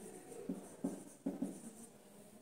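Marker pen writing on a whiteboard: about four short strokes of the tip across the board, each starting with a sharp tap.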